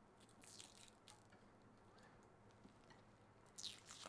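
Near silence: room tone with a few faint, brief clicks and a short soft hiss near the end.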